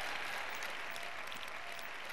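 Large audience applauding softly: a steady spatter of clapping.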